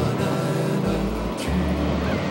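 Background music: a song passage with held bass notes that shift every half second or so, with no singing yet, and a short sharp hit about one and a half seconds in.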